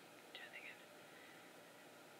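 Near silence: room tone, with a brief faint whisper from a woman about half a second in.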